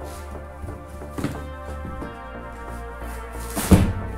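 Background music, with two thumps from a large cardboard box being handled: one about a second in and a louder one near the end.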